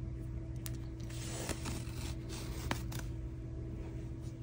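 Soft rustling and a few small clicks of yarn and crocheted fabric being handled as a yarn needle is drawn through for whip-stitch seaming, over a steady low electrical hum.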